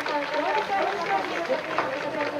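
Many people's voices overlapping outdoors, talking and calling out over one another with no single speaker standing out.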